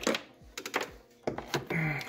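A few sharp clicks and knocks as a small metal-cased mini spot welder and its cables are lifted out of a wooden drawer and set down on a wooden board.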